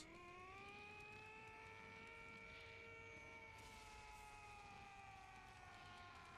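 Near silence with a faint held tone and its overtones, which glides up at the start, holds steady, and sinks slowly near the end.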